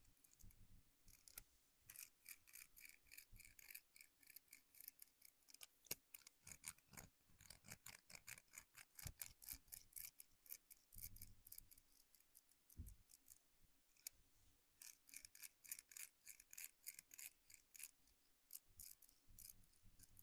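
Faint runs of quick, light scratching strokes from a small hand-held tool worked over the skin of the neck and upper back. The strokes pause for a few seconds past the middle, where there is one soft low thump.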